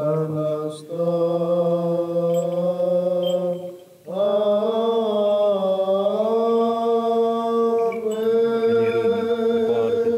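Male cantors chanting Byzantine chant in Greek, drawn out on long, held melismatic notes. The chant comes in two phrases with a short breath break about four seconds in.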